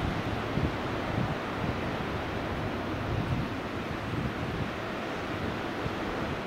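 Wind buffeting the microphone over a steady wash of surf breaking on a beach. The sound cuts in suddenly at the start.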